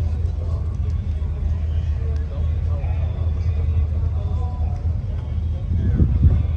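Indistinct talking over a steady low rumble, with no single sound standing out.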